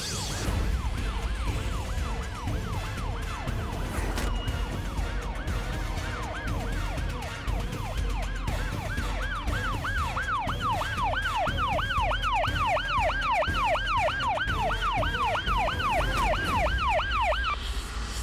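Police vehicle siren in a rapid yelp, about three sweeps a second, growing louder as it approaches and cutting off near the end.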